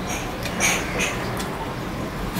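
Fingers squelching through wet soaked rice (panta bhat) on a steel plate while mixing it by hand, with two short squishes about half a second and one second in.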